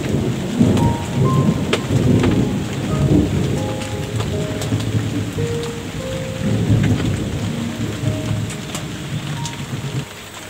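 Rolling thunder rumbling over steady rain, with raindrops ticking close by. The rumble swells twice and drops away suddenly at the end.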